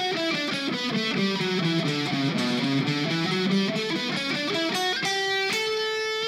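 Electric guitar playing a fast scale run of single notes with alternate picking, stepping down in pitch over the first two seconds, then climbing back up.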